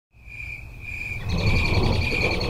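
A high, insect-like trill, as of crickets, over a low rumble. It fades in at the start and grows louder and more rapidly pulsing a little over a second in.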